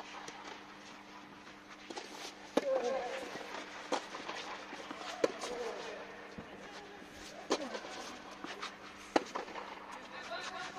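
Tennis rally: five racket-on-ball hits about every one and a half to two seconds, the loudest about two and a half seconds in, over a steady low hum.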